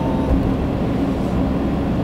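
Steady low rumble of a car driving at road speed, heard from inside the cabin: engine and tyre noise with a faint steady hum.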